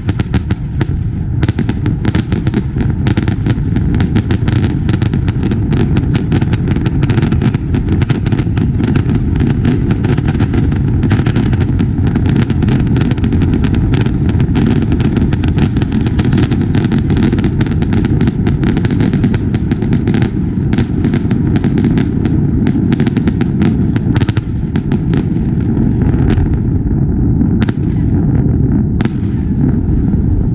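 Fireworks display at close range: a rapid, unbroken barrage of bangs and crackling reports over a steady low rumble, thinning out in the last few seconds.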